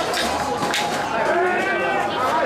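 Festival crowd around a mikoshi: many overlapping voices, with one long drawn-out call rising and falling in the second half, and a few sharp metallic clinks early on.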